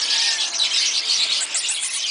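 Many small birds chirping at once in a dense, continuous high chatter.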